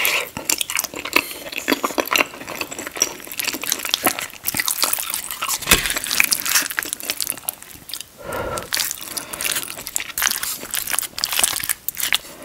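Close-miked chewing of soft, cheesy shepherd's pie, a steady run of wet mouth clicks and smacks. Now and then a wooden spoon scoops through the food in a ceramic bowl.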